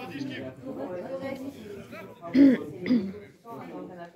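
Nearby voices talking, then someone close by coughing twice in quick succession, loudly, about two and a half seconds in.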